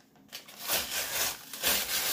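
A cardboard box being opened by hand, with two rough scraping, rubbing strokes about a second apart.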